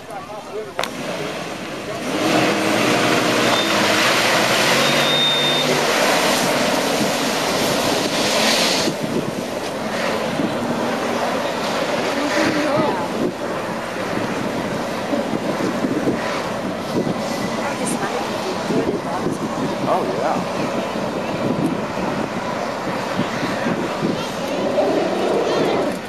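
Jeep Wrangler engine revving hard under load as it ploughs through a mud bog pit, tyres churning through the mud; it gets louder about two seconds in.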